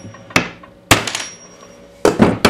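Hammer striking a center punch on a flat steel bar, making a punch mark to start a drill hole. There are two sharp strikes about half a second apart, each with a brief high metallic ring.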